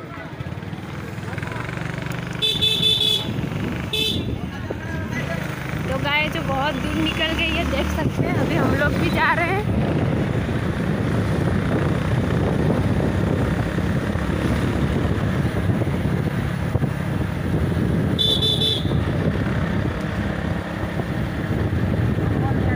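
Riding on a motorcycle: steady engine and wind rumble with road noise, and short horn beeps, a couple about three seconds in, one at four seconds and another near the end.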